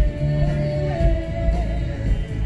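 Live rock band playing a song: singing over guitars, bass, drums and violin, with a long held high note that steps up once about halfway through.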